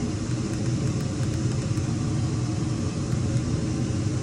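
RV rooftop air conditioner's blower fan running with a steady rumble and rush of air.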